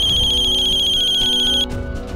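Mobile phone ringtone: a high-pitched electronic trill that cuts off suddenly about a second and a half in as the call is answered, over background music.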